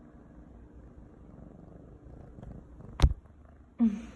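Kitten purring, a low steady rumble, with one sharp knock about three seconds in.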